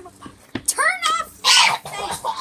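Excited girls' voices: a high, rising exclamation and then a loud breathy outburst, over the faint steady hum of a small electric fan running.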